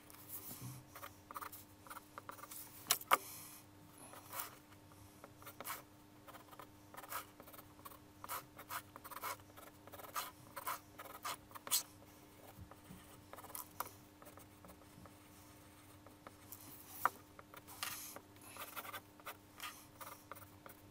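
Pencil scratching across paper in many short, irregular strokes as a freehand sketch is drawn, with a couple of sharper ticks, one about three seconds in and one a few seconds before the end.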